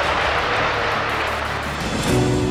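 A room full of people applauding and cheering, with music underneath.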